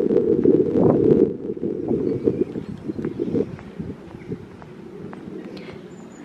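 Wind rumbling on the microphone, loud at first and dying away after a second or two, with light footsteps on stone paving.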